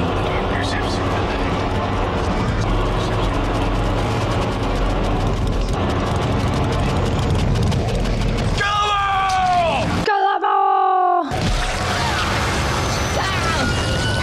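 Horror-film soundtrack of a chaotic fight: a dense, loud din of voices and effects. A long scream-like screech, falling in pitch, comes about nine seconds in and lasts two or three seconds.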